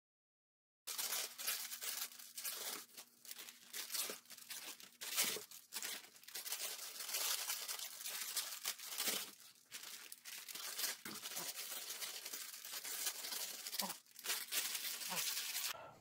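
Instant noodles boiling in a pot of water: a dense crackling bubble with scattered clicks of a utensil stirring, starting about a second in.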